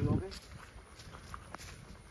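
Footsteps on a dirt and grass path, a few faint, scattered steps. A voice trails off at the very start.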